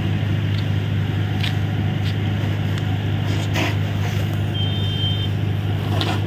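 Engine running steadily with a low drone under a haze of hiss, with a few brief sharp sounds and a short high beep a little past the middle.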